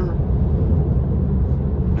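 Steady low rumble of tyres on the road, heard inside the cabin of a Tesla electric car moving at road speed.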